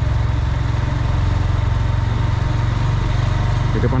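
Motorcycle engine running steadily while the bike is ridden, with a deep, even hum heard from the rider's seat.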